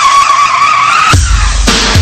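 A squealing screech on the radio broadcast, one steady tone rising slightly, lasting about a second. It cuts off and music with a heavy bass beat comes in.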